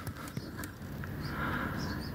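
A lull between words: faint background noise with a few soft clicks.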